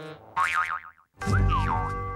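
Cartoon spring "boing" sound effects: a wobbling boing, a short gap, then a low thud and a second wobbling boing, over sustained background music.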